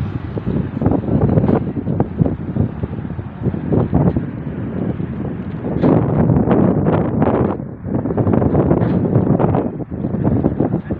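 Wind buffeting the phone's microphone, a rough rumble that rises and falls in gusts.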